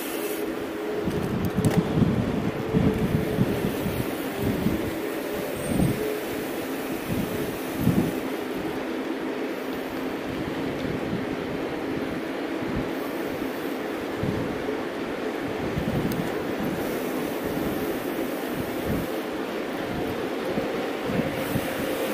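Mountain bike rolling at speed on asphalt, giving a steady tyre hum, with irregular wind buffeting on the camera's microphone that is strongest in the first several seconds.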